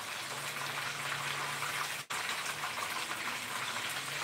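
Battered food frying in oil in a pan: a steady sizzle. The sound briefly cuts out about halfway through.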